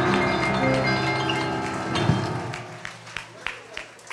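A live band's held closing chord dies away over the first few seconds under a murmur of voices. A few scattered sharp claps follow in its last couple of seconds.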